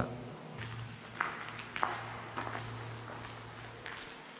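Slow footsteps on the tunnel floor, a step about every half second, over a faint low steady hum.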